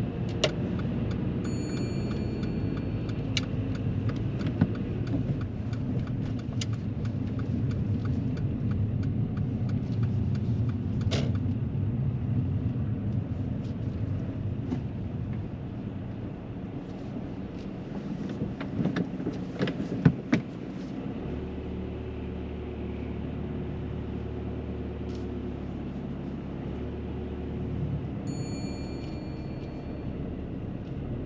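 A car heard from inside the cabin: engine and road noise while driving, then a cluster of clicks about two-thirds of the way in, and the car settles to a steady lower idle hum once stopped. A short high electronic beep sounds near the start and again near the end.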